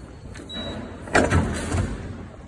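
A short, faint electronic beep, then about a second in a louder motorized sweep of glass security turnstile gates opening.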